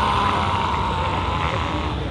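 A man's long, high-pitched yell held for nearly two seconds while flexing, drifting slightly down in pitch, over steady crowd noise.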